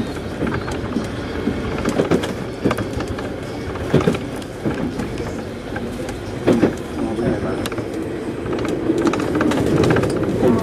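Paris Métro train running along the track, heard from the driver's cab: steady rolling and motor noise with occasional sharp knocks.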